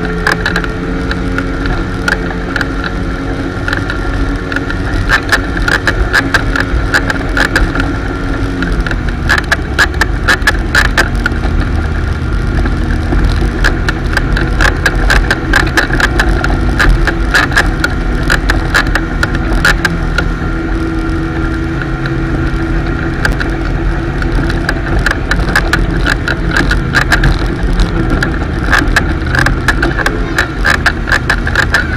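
Motorboat running at towing speed: a steady engine drone with water rushing past the hull and frequent short knocks and buffets. The engine note shifts about nine seconds in.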